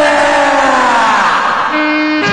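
Bollywood film song: a long sung note on "deewaanaa" that slides steadily downward in pitch and fades out near the end, over a held accompaniment tone.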